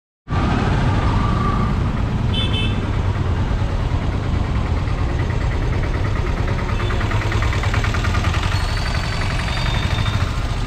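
Busy street traffic with auto-rickshaws, motorbikes and cars running close by under a steady low rumble. A short horn sounds about two seconds in, and an engine right alongside gives a fast, even rattle through the middle.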